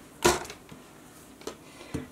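Handling noise from paracord work on a cutting mat: one short scuffing knock about a quarter second in as the hand reaches for a cord, then two faint clicks.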